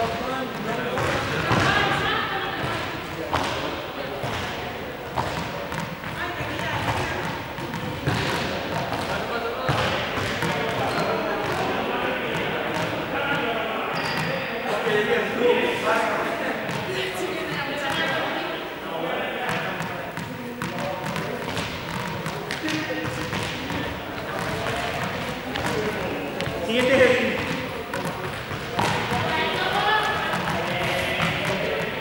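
People talking in a large sports hall, with frequent short thuds and bounces against the floor.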